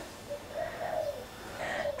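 A dove cooing faintly in the background, a few low, soft coos.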